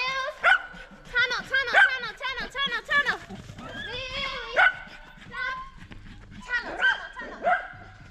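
Small dog barking in quick, excited runs of short, high barks while running an agility course, thinning out to scattered barks in the second half, with a handler's shouted cues among them.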